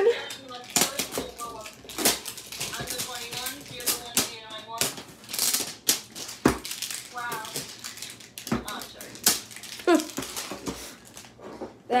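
Scattered clicks and knocks of a metal trading-card tin being handled, with short stretches of voices talking at a lower level in between.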